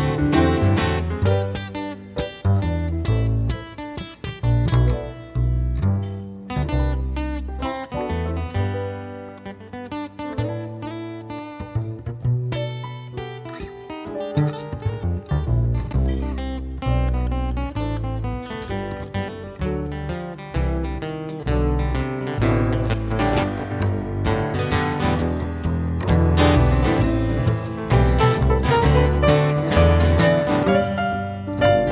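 Acoustic guitar strumming and picking with an upright bass plucking a moving line underneath, in an instrumental break of a live jazz-folk song.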